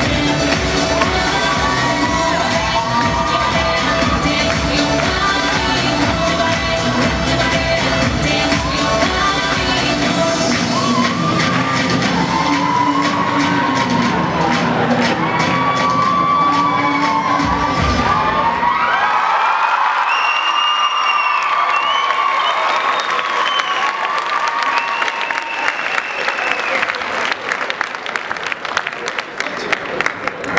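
Loud pop dance music with a steady beat, with an audience shrieking and cheering over it; about two-thirds of the way through the music cuts off and the crowd's screaming and cheering carries on alone.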